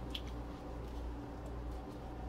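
Gloved hands handling wet cut mango pieces, with a brief soft squish near the start and a few faint ticks, over a steady low hum.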